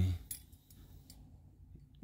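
A man's voice trailing off, then near quiet with only a faint low hum and a few small ticks.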